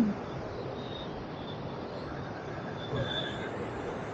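Steady rushing noise of a cruise ship under way: wind and the churning wake water, with a few faint high tones that come and go.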